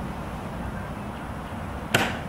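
A single sharp, ringing click from the ceremonial guards' drill near the end, over steady low outdoor background noise, with a much fainter click at the very start.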